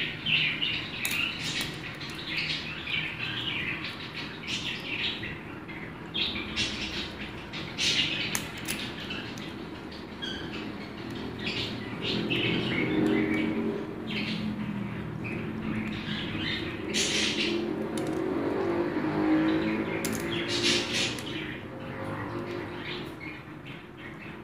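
An African grey parrot cracking sunflower seeds and rummaging through a ceramic bowl of seed mix with its beak: irregular sharp cracks and clicks of husks. A low hum swells in the middle and fades near the end.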